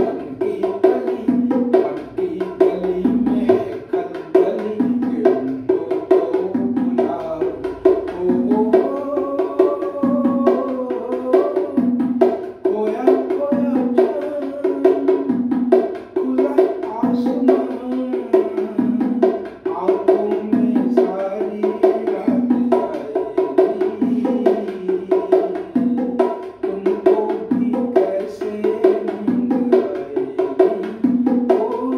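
A pair of bongos played by hand in a steady repeating rhythm, the strokes alternating between a lower and a higher drum.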